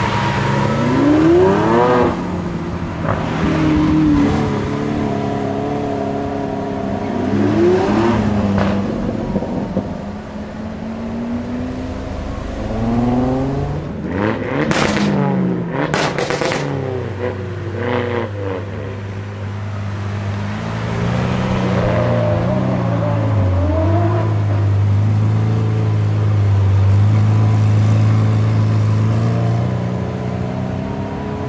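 Lamborghini Aventador V12 engines revving and accelerating away several times, pitch sweeping up with each pull. About halfway through come two sharp bangs. The second half holds a steady low engine note from an Aventador running slowly, broken by a couple of throttle blips.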